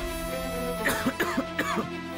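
A man coughing in several short fits, over a steady background music score.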